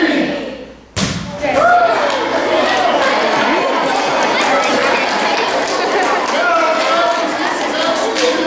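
A basketball dropped from head height hits the hard gym floor with one loud thud about a second in. Right after, a hall full of children call out and chatter all at once.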